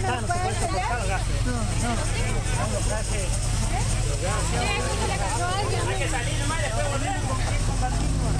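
A car engine running close by, a steady low rumble, under several people talking at once.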